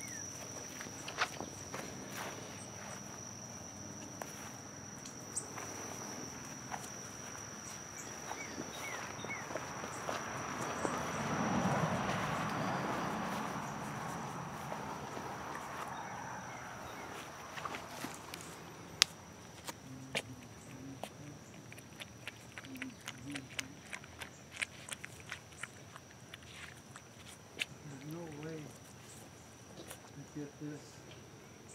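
Footsteps and rustling through leaves and undergrowth while a fox is walked on a leash, swelling loudest near the middle. Later come scattered small clicks. A steady high insect drone runs throughout.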